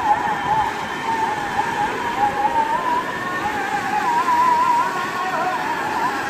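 Muddy floodwater from an overflowing stream rushing and churning in a steady hiss of water. A wavering high-pitched tone bends up and down above it.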